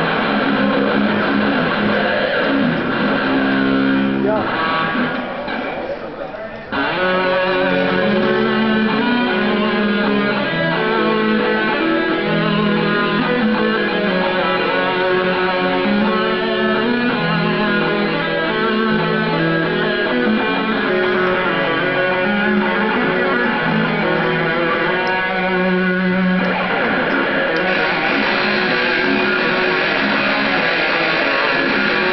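Two electric guitars playing an instrumental metal duet through amplifiers, tuned down to D# standard. The playing thins and drops in level about four seconds in, then comes back in full about seven seconds in and carries on as steady melodic lines.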